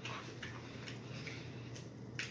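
Faint, scattered crackles and clicks of popcorn: a hand rummaging in a glass bowl of popped popcorn while a mouthful is chewed.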